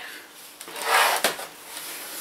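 The plastic lid of a Samsung GT8000-series laptop being lifted open on its hinges: a brief rubbing scrape about halfway through, ending in a click.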